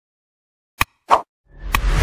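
Sound effects of an animated like-and-subscribe button: a mouse click a little before halfway, a short pop just after it, then a rising whoosh with a deep rumble near the end.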